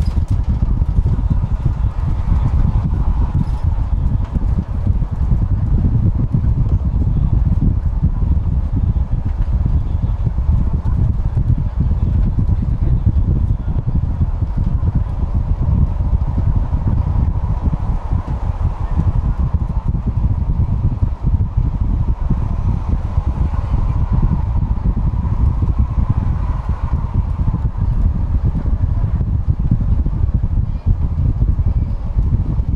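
Cabin noise of a city bus driving: a steady low rumble of engine and tyres on the road, with a faint whine that swells and fades a couple of times.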